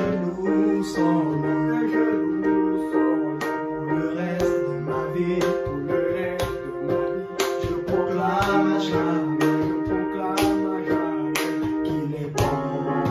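Casio electronic keyboard playing a hymn tune: sustained chords under a moving melody, with a crisp struck attack about once a second.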